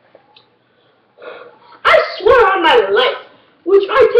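A person's voice making loud, wordless yelping cries that start about a second in after a quiet moment, and break off and resume in short bursts.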